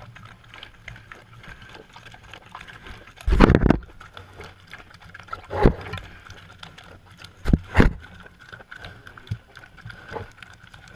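Pigs snuffling and nosing at a camera pressed against their snouts, with sudden loud rubs and bumps on the housing. The longest comes about three seconds in, a shorter one midway, and two quick ones close together near the end.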